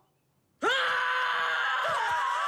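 A man's voice as Sonic lets out one long, loud scream at a steady pitch. It starts suddenly about half a second in, after a brief silence, and is still held at the end.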